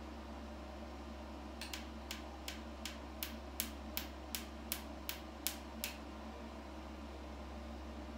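Picosecond laser handpiece firing on facial skin, each pulse a sharp snapping click: about a dozen at an even pace of nearly three a second, starting about a second and a half in and stopping near six seconds. Under them is the steady hum of the laser unit's cooling fans.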